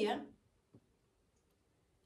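A woman's spoken phrase trailing off at the very start, then near silence broken by a single faint click a little under a second in.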